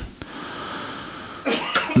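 A man's breath taken close to a handheld microphone: a short click, then a steady rush of air lasting about a second.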